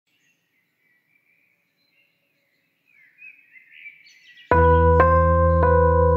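Faint birds chirping over near silence, growing a little louder. About four and a half seconds in, electric piano music with a deep bass cuts in suddenly, a new chord struck every half second or so.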